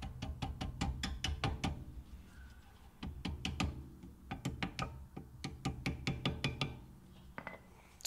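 A hammer tapping the anti-rattle spring clip back onto a VW Golf 7 rear brake caliper, to seat it. The taps come quick and light, several a second, in three runs with short pauses between them.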